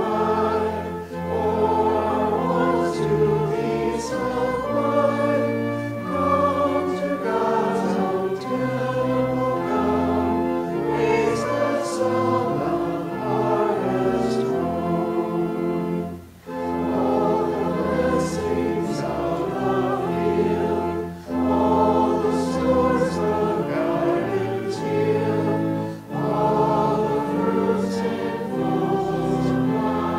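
Church pipe organ playing a slow piece of sustained, held chords, with short breaks between phrases.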